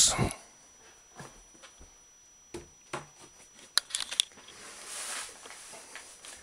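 Faint handling noise: a few light clicks and knocks a few seconds in, then a brief soft rustle, as stretched canvas prints are moved and shuffled.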